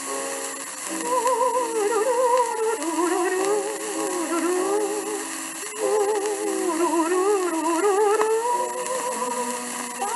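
Shellac 78 rpm record of a 1930s slow-foxtrot playing: several voices sing in close harmony with vibrato over piano accompaniment, with steady surface hiss from the disc.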